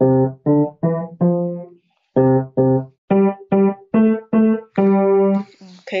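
Yamaha grand piano played one note at a time, a slow simple tune with a short pause about two seconds in and a longer held note near the end.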